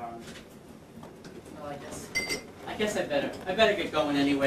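Low voices in a room, with one short ringing clink about two seconds in, like glassware or metal being knocked.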